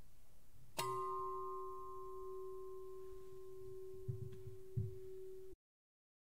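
A hanging bell struck once, ringing on with a low tone and higher overtones that fade slowly, with a couple of soft low thumps about four seconds in; the ring cuts off suddenly near the end.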